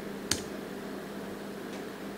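A single computer-keyboard keystroke about a third of a second in, over a steady low hum.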